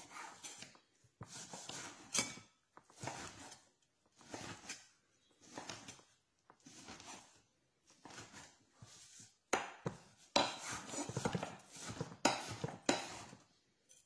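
Kitchen knife chopping grilled aubergine: separate cutting strokes about a second apart, then quicker, sharper chopping knocks in the last few seconds.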